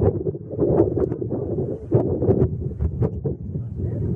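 Wind buffeting the camera's microphone: a loud, gusty low rumble with frequent short knocks and pops.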